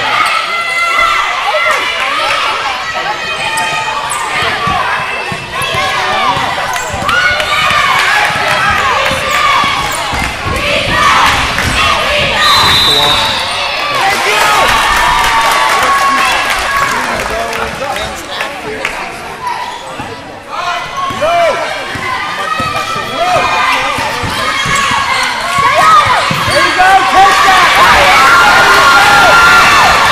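Basketball dribbling and bouncing on a hardwood gym floor during play, under overlapping shouts and chatter from players and spectators, getting louder near the end.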